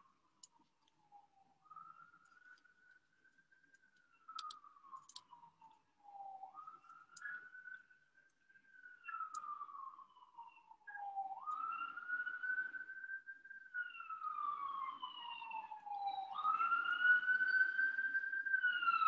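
Ambulance siren in a slow wail, rising and falling about every five seconds, faint at first and growing steadily louder toward the end.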